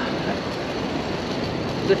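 Steady outdoor background noise, an even rumble and hiss with no distinct events.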